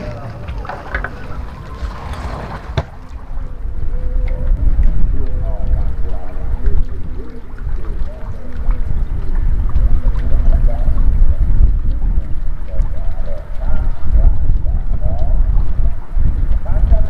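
Wind buffeting the microphone in a loud, rough low rumble that builds up a few seconds in, with faint voices underneath.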